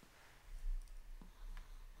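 A light click about a second in from a hand working the computer at the desk, over a low rumble of movement in the chair.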